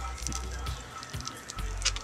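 Background music and faint voices at a moderate level, with a few soft clicks and a sharper tick near the end.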